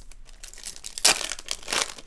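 Foil wrapper of a Japanese Pokémon TCG booster pack crinkling and tearing as it is handled and opened, in two brief rustling bursts, about a second in and again near the end.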